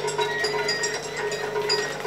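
Light background music with short, high notes over a steady low tone.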